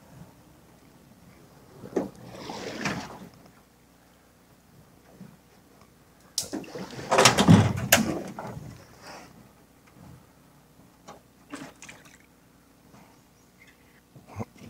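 Metal jon boat knocking and scraping, with water sloshing, as a person climbs out and pulls it up onto the bank. The loudest part is a couple of seconds of clatter and scraping about halfway through, followed by a few light knocks.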